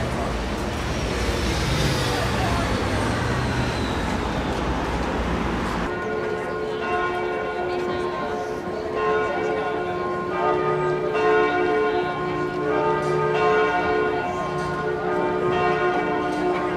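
A steady rushing outdoor noise, then from about six seconds in the bells of Notre-Dame de Paris cathedral ringing a peal, several tones overlapping and changing every second or two.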